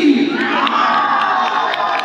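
A crowd cheering and shouting, with one shout rising in pitch about half a second in and then held.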